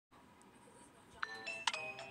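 Bell-like chime: two ringing notes, the first a little over a second in and the second about half a second later, each struck sharply and left to ring.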